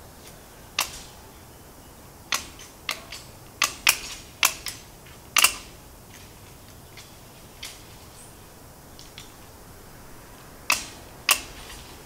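Aviation snips cutting through the wires of hardware cloth, each cut a sharp snip. There is a quick run of about eight snips in the first half, a pause, then two more near the end.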